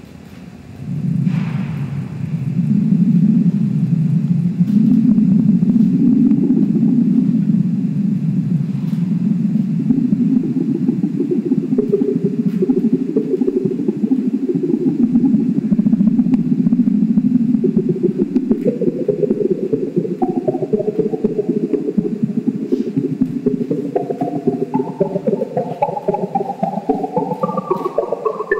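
Live electronic computer music played on the Radio Baton: a dense low rumbling drone swells in about a second in, and over the last third pitched notes enter and climb higher in a quick flickering pattern.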